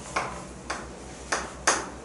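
Chalk striking a chalkboard while writing: four sharp taps, the loudest near the end.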